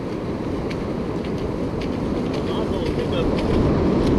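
Steady wind rumbling on the microphone over the continuous wash of breaking surf.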